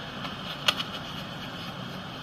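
A single sharp smack of a padded hand shield striking a football receiver about two-thirds of a second in, with a few lighter knocks around it. A steady background hum runs underneath.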